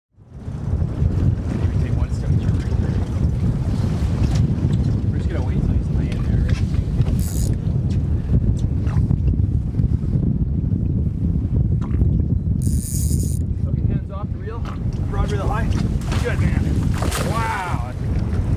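Wind buffeting the microphone aboard a fishing boat at sea, a steady low rumble. People talk briefly near the end.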